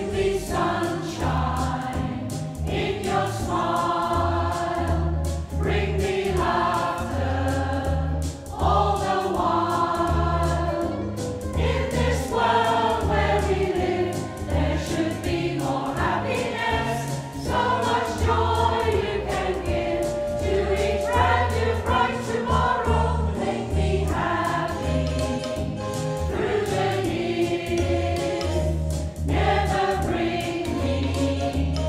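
Community choir of mostly women's voices singing a song together in phrases, over an instrumental accompaniment with a low, regularly repeating bass.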